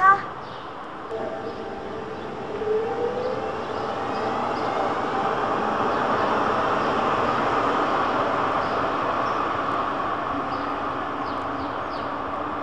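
A tram passing on street track: a rising motor whine and running noise that build to a peak mid-way and ease off as it goes by. A short sharp sound comes at the very start.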